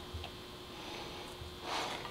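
Quiet room tone with a faint steady hum, and a brief soft hiss near the end.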